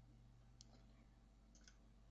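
Near silence with faint computer mouse-button clicks: one about half a second in, then two in quick succession near the end.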